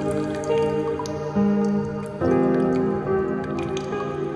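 Slow, calm piano music with rain dripping over it. New chords come in about half a second, a second and a half, and two seconds in, over scattered light drips.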